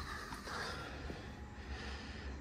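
Low, steady background noise with no distinct event: room tone in a short pause between speech.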